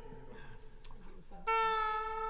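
Faint low voices and a click, then about one and a half seconds in a loud, steady, sustained note on a musical instrument starts abruptly and holds.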